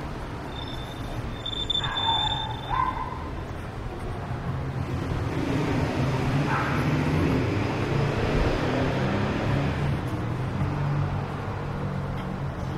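Idling engine of a parked delivery van, a low steady hum that grows louder from about four seconds in as it is passed close by, over street noise. About two seconds in there is a short high-pitched call or whine.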